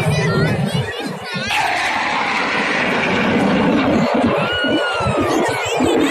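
A jet aircraft passing overhead at an air show: a loud roar that comes in suddenly with a falling sweep about a second and a half in and holds for several seconds, over crowd chatter.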